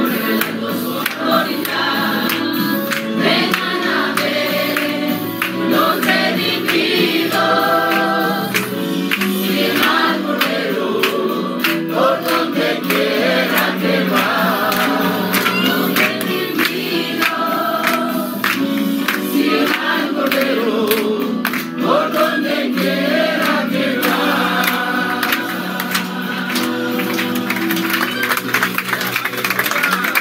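A congregation of men and women singing a worship song together, with hands clapping along to the beat.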